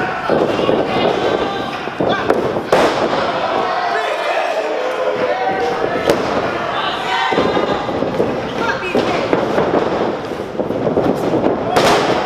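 A small crowd shouting and cheering at a pro-wrestling match, with sharp impacts of wrestlers hitting the ring about three seconds in and again just before the end.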